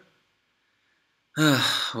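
Near silence for over a second, then a man sighs, a breathy falling exhale that runs into a spoken "well".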